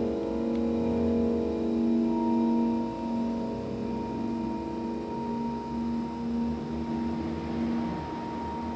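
Vibraphone chord ringing on and slowly fading, its lowest note wavering in a steady pulse; a single high note joins about two seconds in and holds.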